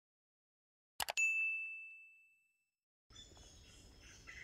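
A sound effect in a video intro: two quick clicks, then a single bright ding that rings and fades over about a second and a half. Near the end a faint outdoor background comes in.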